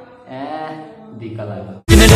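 A man's voice, then, near the end, loud music with deep bass notes sliding downward cuts in suddenly.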